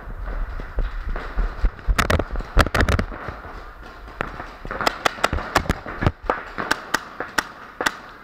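Paintball markers firing: a quick group of sharp pops about two seconds in, then a string of about a dozen more shots, unevenly spaced, through the second half.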